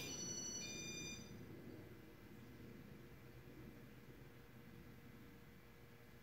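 A click, then about a second of several high, steady electronic tones, followed by the faint, steady hum of a Casablanca Zephyr ceiling fan's motor running.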